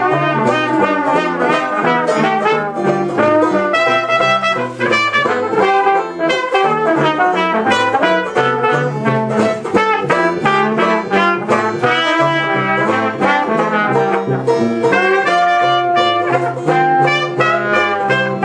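Dixieland jazz band playing live: trumpet and trombone playing lines together over a rhythm section, with a low bass line stepping from note to note on a steady beat.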